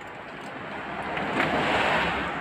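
A rushing noise of moving air that swells through the second half and peaks near the end: an electric stand fan blowing across the microphone.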